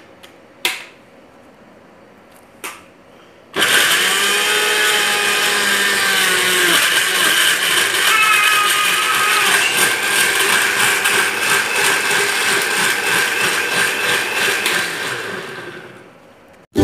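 Electric countertop blender switching on about three and a half seconds in and running loud and steady as it purées tomato halves, its pitch sagging a little as it takes up the load, then running down just before the end. Two short knocks come before it starts.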